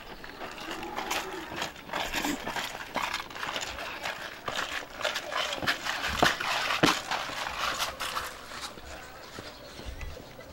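Voices with a scatter of short, sharp cracks and clicks; the two loudest cracks come about six and seven seconds in.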